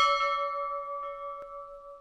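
A single bell chime, struck once and left ringing with several steady tones that slowly fade, then cut off abruptly near the end: the jingle of an intro logo animation.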